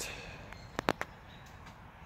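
Quiet background with two short, sharp clicks about a fifth of a second apart, just under a second in.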